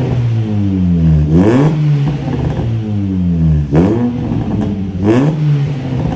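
Honda Mobilio RS's 1.5-litre i-VTEC four-cylinder engine revved in three quick throttle blips, each rising sharply and falling slowly back to idle. The exhaust comes out through an aftermarket racing muffler held on the tailpipe for a test fit.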